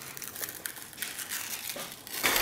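Foil seal being peeled off the mouth of a plastic supplement tub: quiet, irregular crinkling and crackling.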